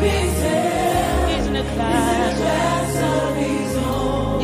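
Live gospel worship music: several voices hold long, wavering sung notes over a steady band accompaniment with sustained low bass notes.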